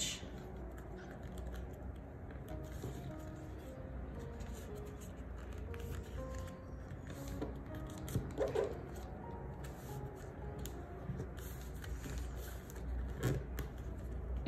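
Thick paper being folded and creased by hand, with soft rustles and scrapes, over quiet background music.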